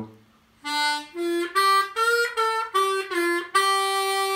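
C diatonic harmonica playing a short melodic lick of about eight separate draw notes, stepping and sliding between pitches and ending on a long held note. Bent notes are used as melody notes: a bend on hole 2 and two different bends on hole 3.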